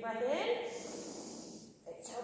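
A woman's drawn-out vocal sound that rises in pitch near the start, then trails off into a breathy exhale that fades before the end.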